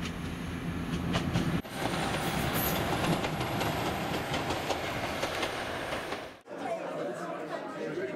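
Diesel passenger train passing: engine rumble, then wheels clattering along the rails. Near the end it cuts to the chatter of a crowd of people in a room.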